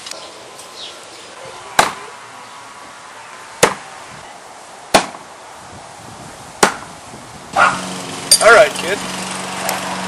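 Four thrown knives striking a wooden board fence one after another, each a sharp single thunk, spaced about one and a half to two seconds apart.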